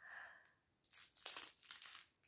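Faint crinkling of the clear cellophane wrappers on gingerbread cookies on sticks as they are handled, in a few short rustles in the second half.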